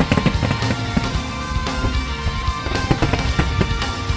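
Music playing loudly alongside fireworks going off, with many sharp irregular bangs, thickest in the first second.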